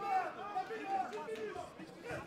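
Background voices in a fight arena: spectators and cornermen calling out and chattering.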